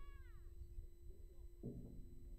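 A faint, high-pitched call near the start that rises and then falls in pitch, with a second, shorter call-like sound near the end, over a steady hum and low wind rumble.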